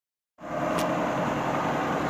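Tree CNC knee mill running a program: a steady mechanical hum with one constant mid-pitched tone, starting a fraction of a second in, with a faint click about a second in.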